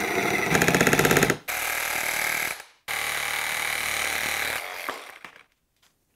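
Milwaukee M12 Hackzall cordless reciprocating saw cutting through a metal tube, in three runs with short pauses between, the last one fading out about five seconds in as the cut is finished.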